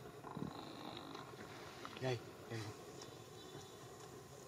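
Faint insect buzzing with a steady high-pitched whine, broken by a short voice-like call about two seconds in and another soon after.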